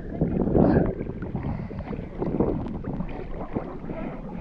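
Choppy sea water splashing and sloshing at the waterline right against the microphone. The loudest surge comes about half a second in.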